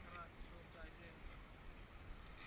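Faint, low voices over a low wind rumble on the microphone.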